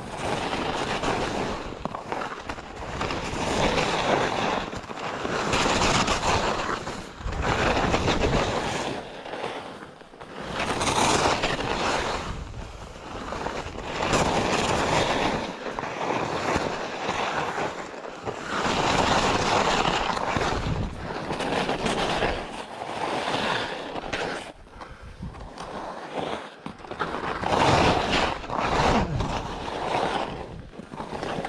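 Skis sliding and scraping over packed snow through a series of turns, the noise swelling and fading with each turn every two to three seconds.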